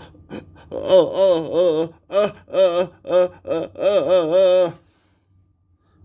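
A man's voice making wordless sounds in a run of short, pitched notes with a wavering pitch, like a hummed or sung build-up of suspense before a reveal. It stops about a second before the end.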